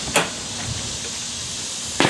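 Steady outdoor background hiss, with one brief sharp click about a fifth of a second in.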